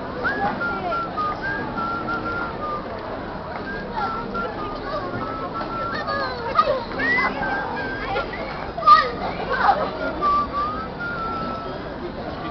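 Excited children shrieking and calling out, loudest about halfway in and again about three-quarters in, over crowd chatter. A thin tune of held high notes plays throughout.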